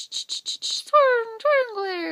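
A woman's voice imitating a water sprinkler: a run of quick hissing 'sh-sh-sh' pulses, about five a second. About a second in, these give way to a sing-song spoken phrase that falls in pitch.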